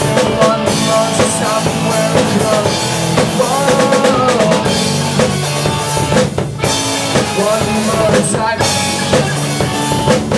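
Live band playing loud and steady: a drum kit with bass drum and snare, together with electric guitars through stage amplifiers.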